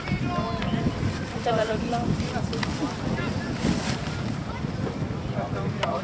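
Wind buffeting the microphone, a steady low rumble, with faint voices talking in the background.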